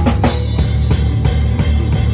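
Acoustic drum kit played along with a recorded song, as a drum cover: bass drum, snare and cymbal hits over the track's steady bass line.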